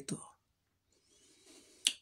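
A short pause in a woman's speech: a faint breath in, then a single sharp mouth click near the end as she parts her lips to speak again.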